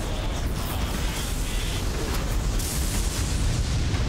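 Action sound effects for an animated battle: a continuous deep rumble of explosions and crashing debris.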